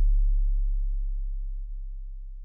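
A deep, steady bass tone, the last note of an electronic music track, fading away smoothly.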